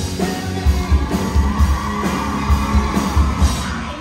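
Live rock band, electric guitars and drum kit, playing loudly with a steady driving beat.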